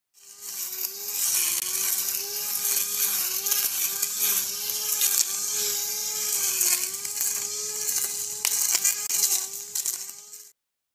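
Small 12-volt battery-powered cordless brush cutter running and cutting grass: a steady electric-motor whine whose pitch dips slightly now and then as the spinning head takes on grass, over the hiss of blades or line whipping through the grass and a few sharp ticks from leaves and stems being struck.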